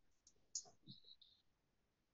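Near silence: room tone, with a few faint brief clicks between about half a second and a second in.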